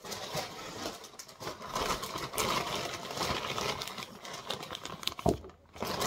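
Plastic packaging bag crinkling and rustling as it is handled, a dense crackle with a short pause near the end.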